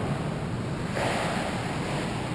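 Steady rushing background noise of an ice rink during play, swelling into a brighter hiss for about a second midway.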